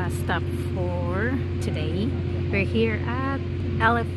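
People's voices talking and chattering over a steady low mechanical hum.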